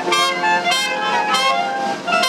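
Dixieland jazz front line of trombone, trumpets and reeds playing three short punched chords about two-thirds of a second apart.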